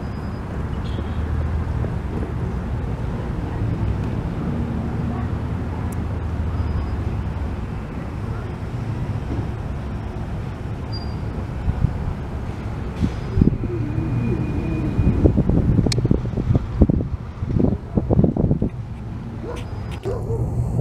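Steady low rumble of road traffic with wind on the microphone. In the last several seconds, irregular louder sounds with some pitched calls join in.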